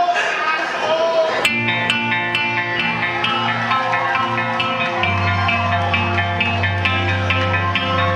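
A live rock band starts a song about a second and a half in: a quick, repeating picked electric-guitar figure over held bass-guitar notes. Before it, crowd chatter and voices are heard.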